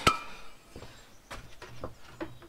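A sheet-metal table swivel base being handled: one sharp click at the start, then a few faint knocks and rustles.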